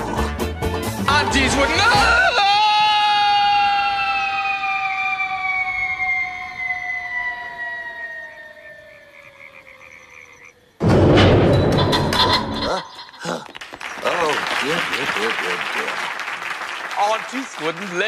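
The end of a jaunty music-hall song, then a cartoon falling whistle: one long descending whistle that fades as it drops, the sound effect of a fall, ending about eleven seconds in with a loud heavy crash of landing. Noisy voices follow.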